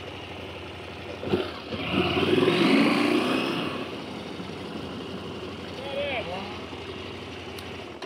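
KTM 890 Adventure's parallel-twin engine running at low speed, getting louder and rising in pitch for about a second and a half as it accelerates two seconds in, then easing back to a steady low run.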